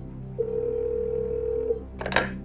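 Telephone ringback tone: one steady tone of about a second and a half as the line rings before the call is answered, over a low, steady background music bed.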